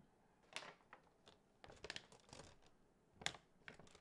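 Faint handling of sheet face mask packets: scattered soft crinkles and clicks, a little cluster around the middle and a sharper click just past three seconds in.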